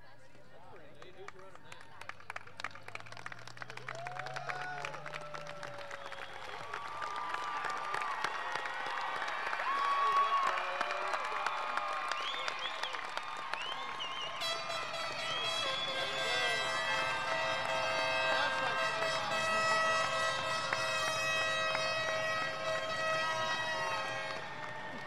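Large crowd clapping and cheering with whoops and whistles, building to its loudest about ten seconds in. About fourteen seconds in, music of steady held notes begins over the applause.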